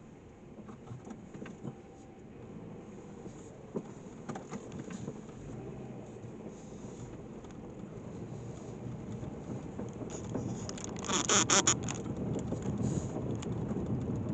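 Car tyres rolling slowly over a gravel road, a steady crunching and crackling of loose stones that grows louder as the car moves on, with a louder burst of crackling about eleven seconds in.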